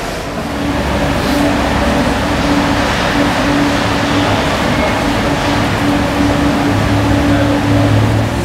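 Steady machine running noise with a low hum and a steady droning tone that comes and goes.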